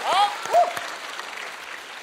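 Studio audience applauding and laughing after a punchline, the clapping fading over the two seconds. Two brief voice sounds rise over it in the first second.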